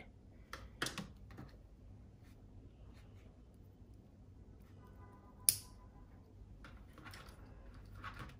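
Small clicks and rustles of a car radio wiring harness and its plastic connectors being handled. There are a few light clicks in the first second and one sharp, loud click of a connector about five and a half seconds in.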